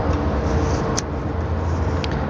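A steady low rumble of background noise, with a single sharp click about halfway through.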